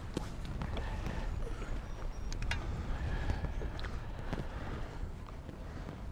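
Scattered sharp knocks and clicks of handling in a fishing boat over a steady low rumble, as a hooked smallmouth bass is played at the surface beside the boat and lifted aboard by hand.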